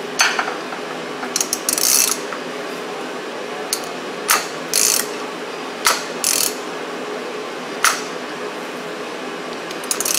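Ratchet wrench clicking in irregular short bursts and single sharp clicks as a 12-valve Cummins engine is turned over by hand, rotating the Bosch P pump's governor flyweights.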